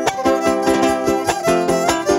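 Live son huasteco (huapango) from a trio: a small jarana and a guitar strumming a quick, even rhythm under a melody line, in an instrumental passage between sung verses.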